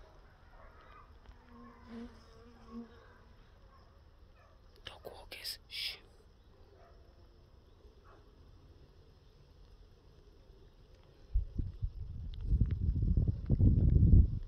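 Someone walking through dense overgrown brambles and weeds. It is quiet at first, with a few sharp snaps about five seconds in, then loud low rustling and thudding in the last few seconds.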